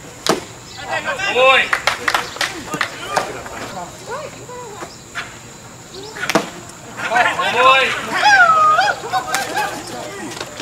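Unintelligible calls and chatter from players and spectators at a baseball game, with a sharp pop just after the start and another about six seconds in, as pitches smack into the catcher's mitt.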